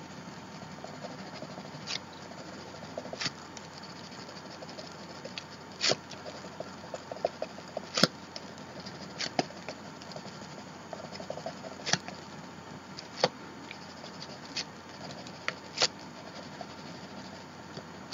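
Watercolor crayon scribbling on an art journal page: a soft, scratchy rasp with sharp ticks every second or two.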